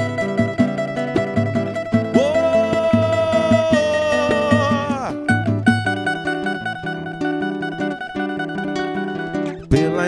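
Live samba played on cavaquinho, acoustic guitar, pandeiro and a large hand drum, with quick strummed cavaquinho over a steady percussion beat.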